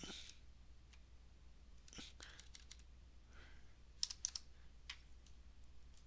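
Computer keyboard keystrokes: a few faint, scattered key clicks as a WinDBG command is typed, with a small cluster about four seconds in.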